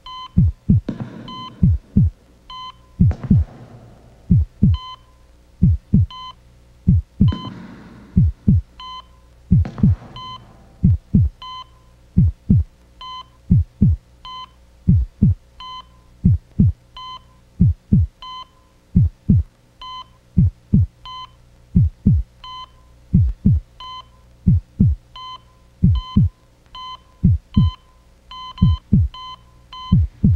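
Heartbeat sound effect, paired low thumps about once a second, each with a short electronic beep from a heart monitor tracking the patient's pulse, over a steady hum. The beats come closer together near the end, and a few soft breathy swells rise in the first ten seconds.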